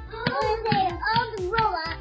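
A child's singing voice carrying a melody over background music with a steady beat.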